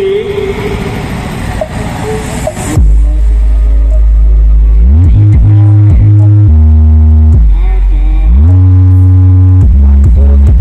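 A large outdoor sound system suddenly starts blasting very loud, deep sustained bass notes about three seconds in, after a stretch of crowd noise. The bass holds each note, steps between pitches and slides up and down, as in a sound-system battle where each rig sounds in turn.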